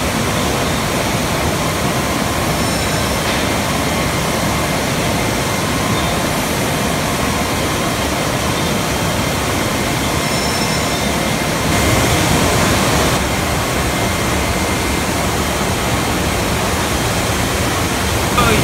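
Steady, loud machinery noise of a bottling plant: a dense, even rush with a few faint steady whines, swelling briefly about twelve seconds in.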